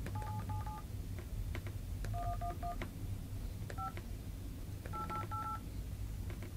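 Phone keypad tones as a number is dialed: short two-tone beeps in quick runs of three or four, with pauses between the runs and a single beep a little before 4 seconds in. A low steady hum lies underneath.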